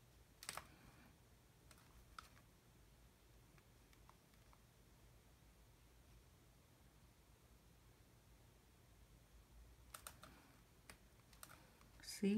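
Near silence: room tone with a faint low hum and a few small, faint clicks, one about half a second in, a couple around two seconds, and a short cluster near the end.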